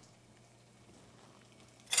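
Near silence: faint room tone. A short, loud hiss breaks it at the very end.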